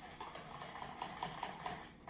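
Wire whisk beating a wet mixture of mashed banana, eggs and oil in a stainless steel mixing bowl, the wires clicking against the bowl about four or five times a second.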